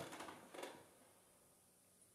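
Near silence: room tone, with a faint short noise about half a second in.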